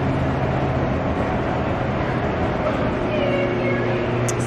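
Steady indoor background ambience: a constant low hum under an even wash of noise, with a faint wavering high call about three seconds in.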